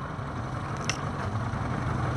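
Boat engine idling steadily with a low hum, with one brief sharp click about a second in.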